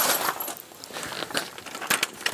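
BORA Centipede collapsible work stand being pushed open, its scissor struts and leg joints clinking and rattling, with a louder burst of clatter at the start and a sharp click near the end.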